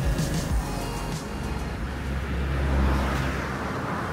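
Music over road traffic, with a vehicle passing that is loudest about two to three seconds in.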